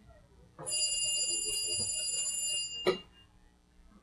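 Stage telephone ringing: one steady ring of about two seconds, followed by a single sharp click.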